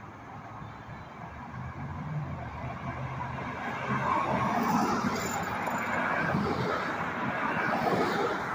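Cars passing on a road: tyre noise and a low engine hum, building as a car approaches and goes by, with more traffic coming on behind it.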